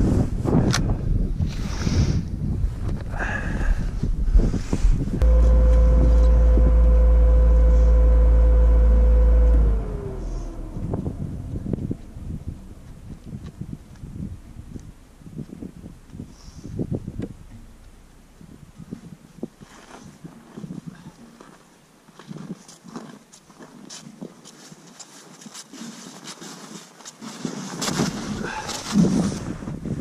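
Snowmobile (Ski-Doo Skandic 900 ACE) running over snow. From about five seconds in, its engine holds a loud steady note, then falls in pitch and dies away near ten seconds as it is throttled down. After that come wind on the microphone and scattered crunching footsteps in deep snow, growing louder near the end.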